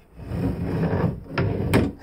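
Small wooden barn-style sliding door on a dresser rolling along its black metal track, a low rumble for about a second, followed by two sharp wooden knocks as it reaches its stop, the second the louder.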